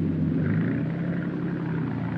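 Boat engine running with a steady low hum.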